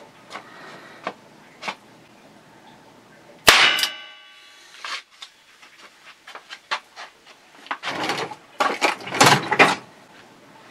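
A single loud clang that rings briefly about three and a half seconds in, followed by scattered clicks and knocks. Near the end come louder rustling handling sounds.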